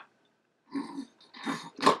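A man's voice imitating snoring: short snore-like bursts, the second about a second in, with a word starting near the end.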